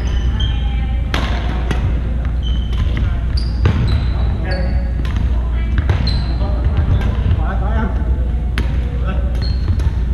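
Badminton rally: sharp racket-on-shuttlecock hits every second or so and short high squeaks of sneakers on a hardwood court, echoing in a large hall over background voices and a steady low hum.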